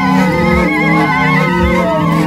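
Dirashe fila ensemble: several long end-blown pipes, each sounding its own note, playing together in an interlocking pattern of overlapping held tones that change every fraction of a second. A wavering high note rides on top, and a soft low thud comes about once a second.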